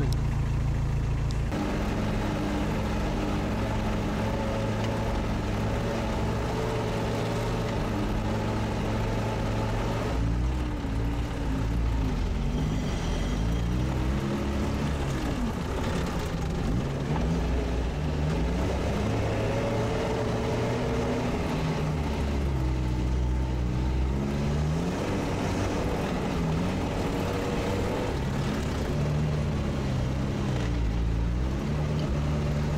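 Sherp all-terrain vehicle's diesel engine running, heard from inside the cab. A steady low drone whose pitch rises and falls again and again as the vehicle drives along.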